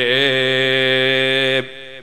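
A man's voice chanting in a melodic recitation style: one long held line with a slightly wavering pitch that breaks off about one and a half seconds in and echoes away.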